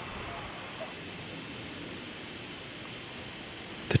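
Steady outdoor ambience in an open grassy field: a soft, even hiss with faint high, steady insect trilling.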